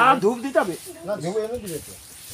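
A person's voice speaking, the words unclear, loudest in the first second.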